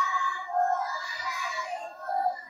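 A class of young children singing together in chorus, their high voices wavering in pitch.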